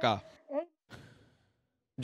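A man's voice finishing a spoken sign-off, then a short breathy vocal sound about half a second in and a faint breath, before the sound cuts to dead silence about one and a half seconds in.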